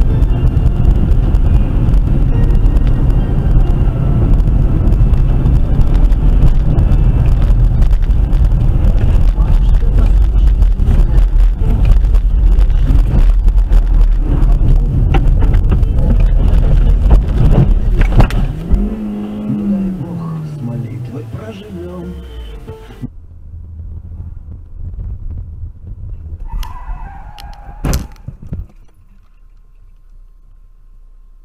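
Loud, steady rumble of a car driving on a wet, slushy road, heard from inside the cabin. About nineteen seconds in, a falling tone sets in as the engine slows, and a few seconds later the rumble drops away sharply; a single sharp knock comes near the end.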